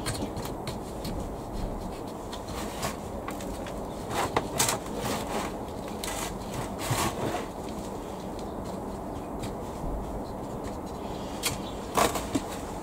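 Hands scooping peat-free compost into a plastic pot and pressing it down, with irregular rustles and scrapes of compost against plastic.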